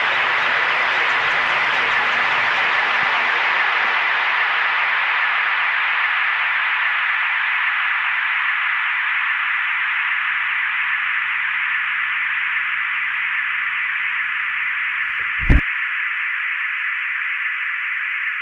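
A steady, static-like hiss, like a detuned radio, closes out a synth track. Its range slowly narrows to a mid-high band over faint low hum tones. A single low thump comes near the end, and most of the hum drops away after it.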